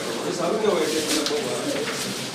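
Murmur of several people talking at once in a room, overlapping voices with no single speaker standing out.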